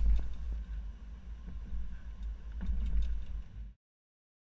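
Low wind and road rumble on a camera mounted at the back of a slowly driven SUV, with a few faint knocks from the loaded hitch bike rack as it goes over speed bumps. It cuts off suddenly near the end.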